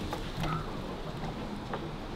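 Quiet outdoor background noise, an even low hiss like light wind, with a few faint ticks.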